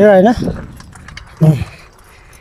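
A voice singing a held, wavering note that ends about a third of a second in, then a short sung syllable about a second and a half in, with faint clicking and rattling in between.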